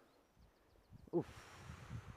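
A man grunts a short 'oof' about a second in. It is followed by about a second of rushing, hissing noise with an irregular low rumble.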